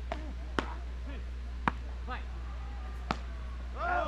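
Beach tennis paddles striking the ball in a rally: a serve and then three returns, four sharp pocks spaced about half a second to a second and a half apart, over a low steady hum.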